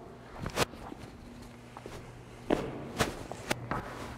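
Boot footsteps and shuffles on a hard floor, with a few short sharp knocks scattered through.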